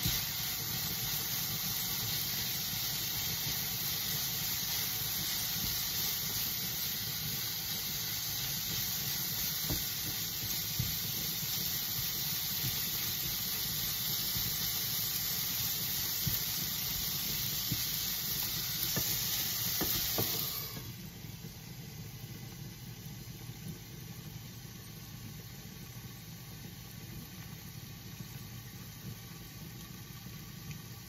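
Shredded cabbage sizzling and steaming in an open frying pan as it is stirred with a silicone spatula. About two-thirds of the way through the loud hiss drops off suddenly as the pan is covered with its glass lid, leaving a softer hiss over a steady low hum.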